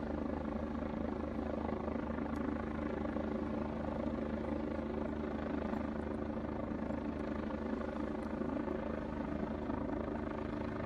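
Rescue helicopter hovering: a steady, even rotor chop over a constant engine drone, unchanging throughout.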